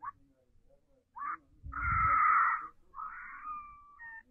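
Thin, tinny sound from a small mobile-phone speaker playing a cartoon clip: a short cry about a second in, a longer, louder cry in the middle, then a drawn-out whine held to the end.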